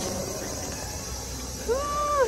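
A single drawn-out vocal call near the end, its pitch rising, holding, then falling, over a steady background hiss.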